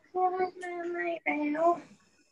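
A woman's high voice singing in long held notes, three drawn-out phrases one after another.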